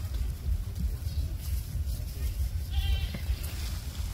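A short, high-pitched animal call about three seconds in, over a steady low rumble.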